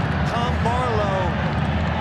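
Steady stadium crowd noise under a soccer television broadcast, with a commentator's voice briefly in the first second.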